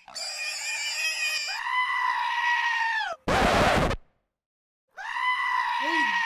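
High-pitched, long-held squealing sounds, voice-like and steady in pitch, two of them, with a short harsh burst of noise between them about three seconds in.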